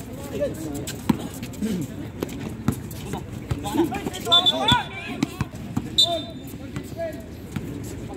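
A basketball bouncing several times on an outdoor hard court, in separate sharp thumps, with players and spectators calling out over it.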